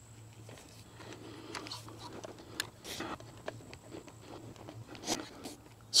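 Faint, quiet ambience with a low steady hum and a few scattered soft clicks and rustles.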